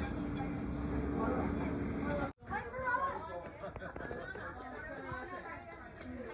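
People's voices chattering in the background, with a steady hum under the first two seconds. The sound cuts out abruptly a little over two seconds in, then the chatter resumes.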